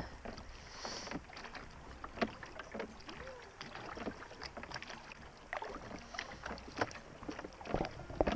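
Rowing dinghy under oars: irregular knocks and clicks of the oars working in the oarlocks, over water lapping against the hull and low wind on the microphone.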